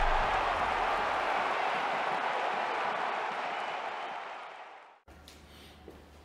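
Logo-intro sound effect: a long rushing noise that trails a deep hit and fades steadily away. It cuts off about five seconds in to quiet room tone with a low steady hum.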